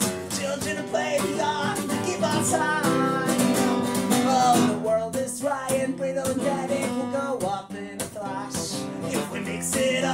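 Steel-string acoustic guitar strummed in a steady rhythm, with a man singing over it.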